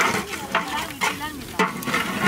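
Mutton frying in spiced oil in a large metal pot, sizzling while a long-handled spatula stirs and scrapes it in repeated strokes.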